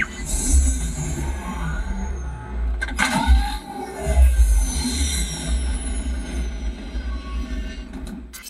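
A film soundtrack, music with sci-fi sound effects and heavy deep bass, played loud through a car's aftermarket audio system with Memphis Audio speakers and subwoofers. Falling whooshes sound over the music, and the bass swells strongly a few seconds in.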